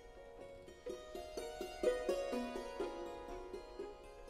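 Salterio, a Baroque hammered dulcimer, struck with two small hammers: after a quieter first second, a quick run of single struck notes, the strings ringing on under each new note.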